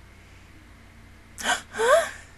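A woman's sharp gasp about one and a half seconds in, followed by a short vocal sound rising in pitch.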